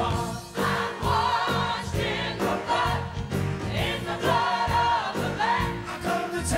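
Church choir and worship leaders singing a gospel worship song together, with a live band playing a steady beat underneath.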